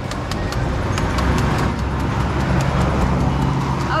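Knife blade chopping repeatedly into a green papaya held in the hand to shred it, sharp irregular clicks a few times a second. Beneath them runs the steady low hum of a nearby vehicle engine, which swells through the middle.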